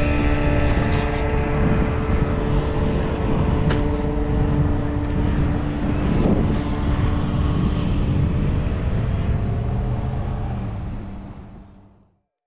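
Steady wind and rolling rumble from a camera moving along on a bicycle, under two held notes of the closing music that die away partway through. A vehicle passes about six seconds in, and the sound fades out near the end.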